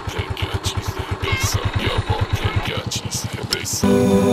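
Motorcycle engine idling with a steady rapid putter, about ten beats a second. Music starts suddenly just before the end.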